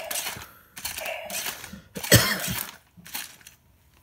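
Remote-control toy fighting robot whirring as its motor swings its arms through a punch, with a sharp clack about two seconds in before it goes quiet.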